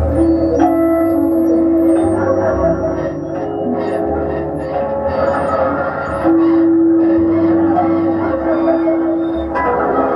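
Live electronic music: long sustained bell- and organ-like tones held over a dense droning texture. One held note sounds at the start and fades after about two seconds; another comes in about six seconds in and holds until near the end.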